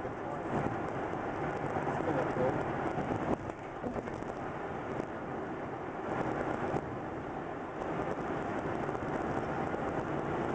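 Steady road and tyre noise heard inside a moving car's cabin.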